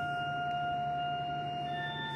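Church organ holding one sustained note; near the end new notes come in as the harmony moves on.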